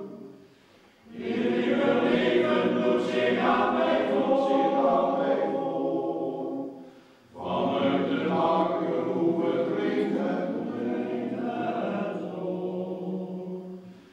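Men's choir singing: a phrase begins about a second in, breaks off briefly about seven seconds in, and a second phrase runs on until a short pause near the end.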